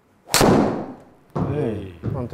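A single sharp crack of a TaylorMade SIM MAX driver striking a teed golf ball at full swing, about a third of a second in, dying away over about half a second.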